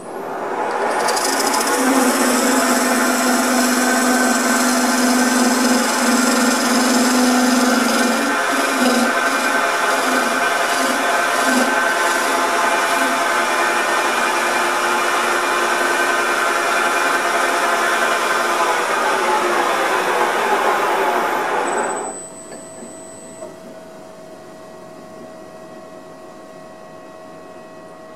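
Wood lathe spinning a wooden cylinder while a hand-held turning chisel cuts it down, a steady dense scraping and hissing of the tool on the wood. About 22 seconds in the cutting stops and only a much quieter steady hum is left.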